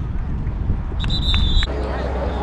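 A referee's whistle gives a short, steady, high-pitched blast about a second in, over wind rumbling on the microphone. The whistle cuts off suddenly.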